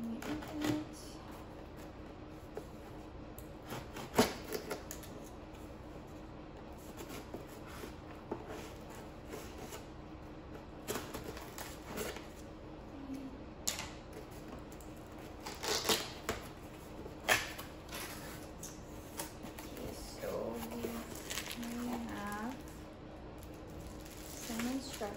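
Scissors cutting the packing tape on a cardboard box: irregular clicks and snips, the sharpest about four seconds in. Toward the end, cardboard flaps and packing inside the box are handled.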